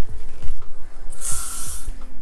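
A short hiss of aerosol hairspray, a little over a second in and lasting under a second, over background music with a beat.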